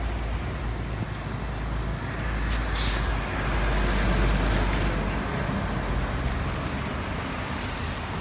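Street traffic with a heavy truck running close by, its deep engine rumble swelling toward the middle. There is a short sharp hiss about two and a half seconds in.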